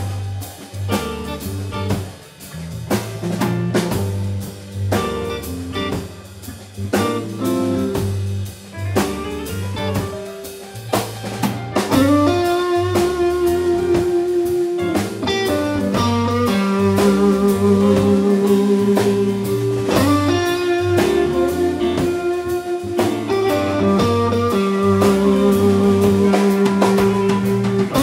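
Live blues band playing an instrumental passage on electric guitars, drum kit, bass guitar and organ. About twelve seconds in it grows louder, with long held, wavering notes over the beat.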